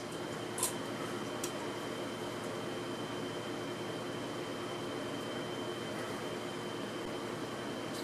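Steady low room hum and hiss with no speech, and two faint clicks about half a second and a second and a half in.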